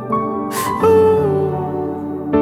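Slow worship music: soft keyboard chords held underneath, with a man's voice coming in about a second in on a long sung note that slides downward.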